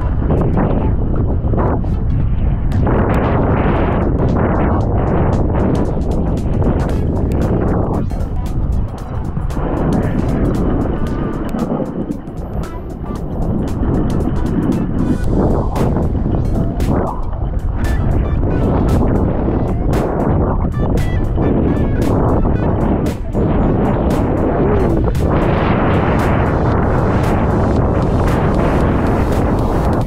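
Steady rush of wind buffeting a helmet-mounted camera's microphone, mixed with a snowboard running and scraping through snow on a descent. It stays loud throughout and eases briefly about twelve seconds in.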